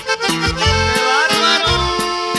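Norteño corrido instrumental break: a button accordion plays the melody, with a quick rising run about a second in, over a steady bass and rhythm accompaniment.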